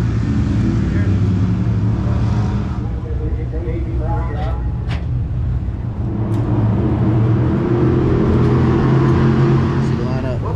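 Race car engines running steadily in the pit area, a continuous low drone, with a single sharp knock about five seconds in.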